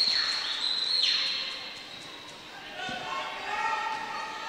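Basketball gym ambience: the murmur of the crowd, a steady high-pitched tone that cuts off about a second in, and a basketball bouncing on the hardwood floor near the end as a player dribbles up the court.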